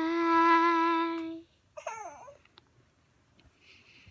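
A boy singing a wordless lullaby note, held steady for about a second and a half, then a brief voice sliding down in pitch.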